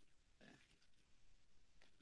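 Near silence: faint room tone with a few barely audible small ticks.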